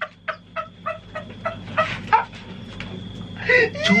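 A man laughing hard in a rapid string of short, high cackles, about four a second, tailing off after roughly two seconds; talk picks up again near the end.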